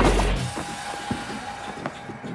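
Background music: a loud low bass note at the start dies away within half a second, then quieter music continues with a steady held note.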